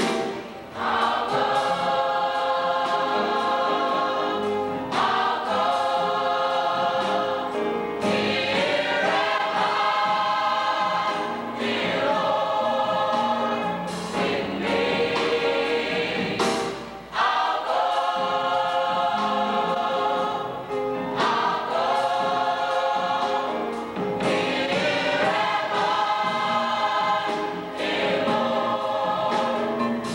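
Gospel choir singing long held chords in repeated phrases of about three seconds each, with occasional hits on a drum kit.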